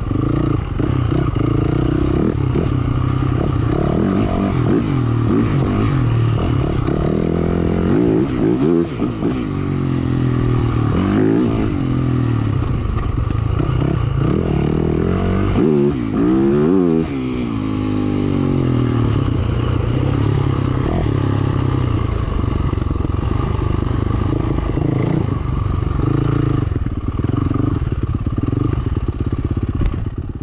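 Yamaha YZ450F dirt bike's single-cylinder four-stroke engine under way on a trail, its revs rising and falling steadily as the throttle opens and closes, with sharper revs about nine and seventeen seconds in.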